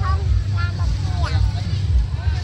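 Steady low rumble of outdoor street sound, with brief faint snatches of people's voices over it.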